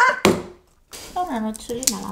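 Voices in short snatches in a small room, broken by a brief pause, with a single sharp click near the end.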